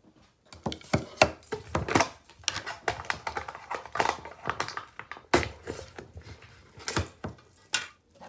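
A plastic shaker cup and containers being handled and set down on a tabletop: a busy run of knocks and clatters, with a few louder knocks.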